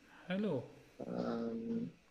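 A dog vocalizing from a film's soundtrack: a short whimper falling in pitch, then a longer, steadier low whine.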